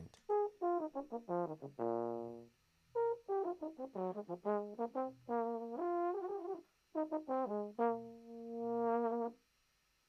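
A solo euphonium recording plays a melodic phrase, with a held note about two seconds in and a long note near the end that swells louder before it stops. A high-frequency EQ boost is being applied to add air on top of the tone.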